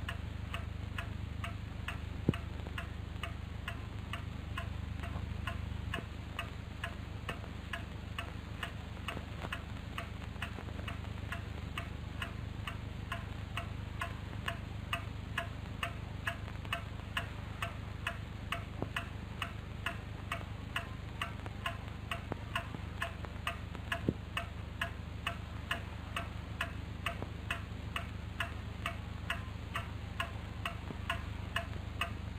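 A clock ticking at an even, fairly quick pace, the ticks growing plainer in the second half, over a steady low hum. A single sharper click sounds about two seconds in and another near the end.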